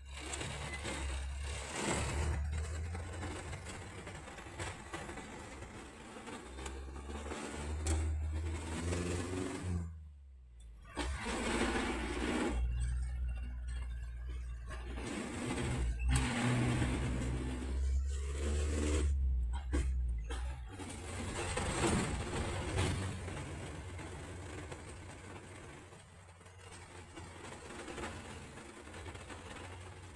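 Engine of a van or small truck heard from inside the cab while driving, its note rising and falling with the throttle. The engine sound drops away sharply for about a second around ten seconds in, with shorter breaks later, over a steady hiss of road noise.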